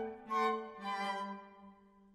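Flute, violin and cello trio playing classical chamber music: two accented notes about half a second apart in the first second, then the sound tapers off to a near pause at the end of a phrase.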